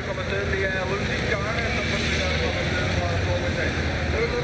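Steady roadside race ambience: an even wash of outdoor noise with a steady low vehicle hum and faint voices of spectators.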